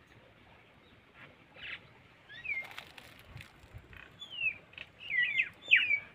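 A small bird chirping: several short high chirps that sweep downward in pitch, starting about two seconds in and coming closer together near the end, with a few faint clicks.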